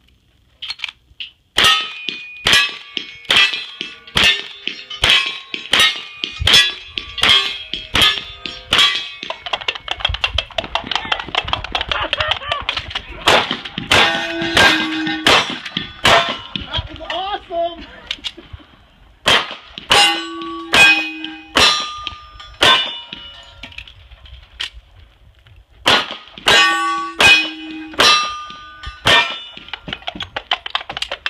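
Gunfire from an 1873 lever-action rifle, a Winchester Model 97 pump shotgun and a Colt 1911 pistol in quick strings, about one shot a second, each shot followed by the clang of a steel target ringing. Coconut halves are clapped together in a galloping hoofbeat rhythm between the shots.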